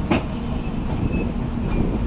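Indian Railways passenger train coaches rolling along the track: a steady rumble, with one sharp clack from the running gear just after the start.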